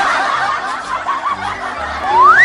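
Several people laughing together, a dense crowd-like laughter, over background music with low held notes.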